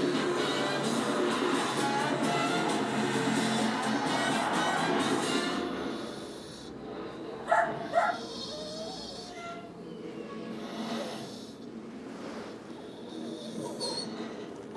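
Television playing a dog-food advert: music for the first five seconds or so, then a quieter stretch with two short, sharp pitched sounds about half a second apart, sound effects aimed at dogs.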